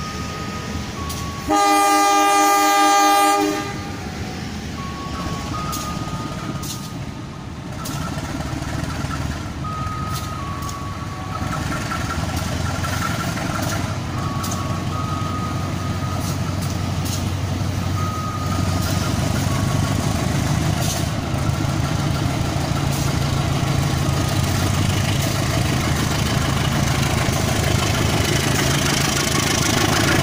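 CC 201 (GE U18C) diesel-electric locomotive sounds its horn in one blast of about two seconds near the start. Its engine then grows steadily louder as the train approaches.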